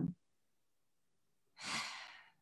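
A person's single audible sigh, a breathy exhale lasting under a second, about one and a half seconds in, after a stretch of near silence.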